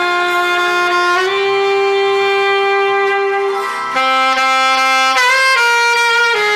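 Selmer Series III alto saxophone with a Vandoren V16 mouthpiece playing a slow ballad melody: a short note, then a long held note of about three seconds, then a lower note and a step back up near the end.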